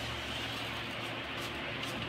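Steady hiss with a faint low hum, from a lit gas stove burner under an aluminium kadhai of heating mustard oil.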